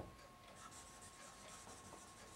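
Faint sound of a dry-erase marker writing on a whiteboard.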